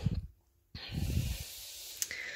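Paper cards being slid by hand across a wooden surface: a steady rustling hiss that starts just under a second in, with low bumps of the hand on the surface beneath it.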